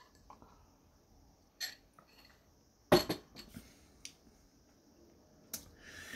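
Drinking from a glass: a few short, soft clicks and one louder click about three seconds in.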